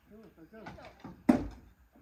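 Voices talking, with one sharp knock a little past halfway through.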